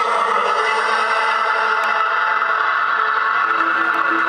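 Live synthesizers holding a loud, sustained droning chord with no drums or bass, a lower note coming in near the end.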